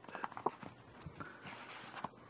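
A page of a small art journal being handled and turned by hand: a few light taps in the first half second, then a soft papery brush in the second half as the page turns over.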